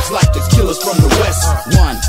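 West Coast G-funk hip hop track playing: a deep bass line and steady drum hits, with a rapped vocal over the beat.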